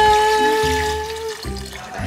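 A long, steady held note that ends about one and a half seconds in, over water being poured from a plastic jug into a wok of rice cakes.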